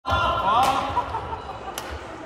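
Badminton play: two sharp racket-on-shuttlecock hits about a second apart, over players' voices and calls.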